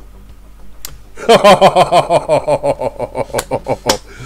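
A man laughing hard, a long run of quick, even ha-ha pulses starting about a second in.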